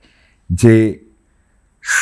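A man's voice saying a single short word, followed by a brief pause before the next word starts at the very end.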